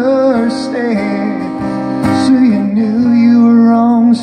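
A man singing with long, wavering held notes over a strummed acoustic guitar.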